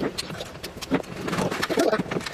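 Close-miked ASMR eating sounds: wet chewing clicks and slurps of chili-oil enoki mushrooms, then a run of short gulping swallows near the end as liquid is drunk from a glass.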